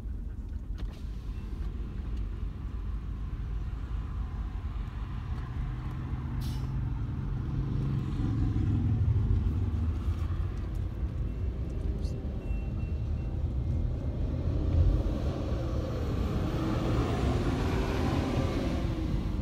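Low, steady rumble of freight cars (covered hoppers and tank cars) rolling past a grade crossing, heard from inside a car's cabin; it grows somewhat louder about halfway through.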